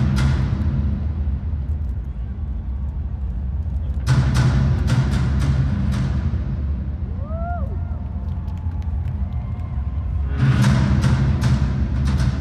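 Live worship band's drums echoing through a stadium: heavy drum hits with cymbals, a cluster about four seconds in and a steady run of them from about ten and a half seconds, over a low sustained bass drone.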